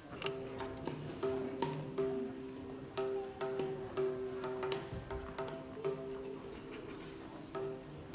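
Tablas struck softly, with irregular sharp strokes a few times a second that ring on a steady pitch from several drums at once.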